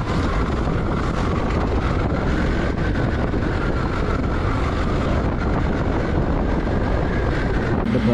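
Steady road noise from a moving vehicle, with wind rumbling on the microphone and a faint whine that drifts slightly up and down in pitch.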